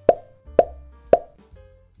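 Three short pops about half a second apart, each with a brief pitched tone, like an edited-in plop sound effect.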